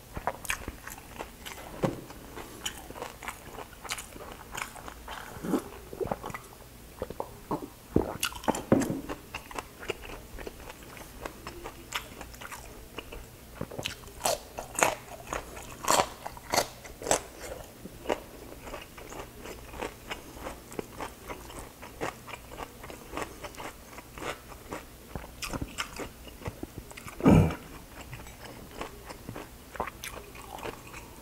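Close-up eating sounds: crispy fried pork and cucumber being bitten and chewed, with irregular sharp crunches that come thickest about halfway through. Near the end there is one louder, lower sound.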